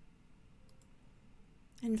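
A quiet pause of room tone with two faint clicks close together a little before the middle, then a woman's voice starting near the end.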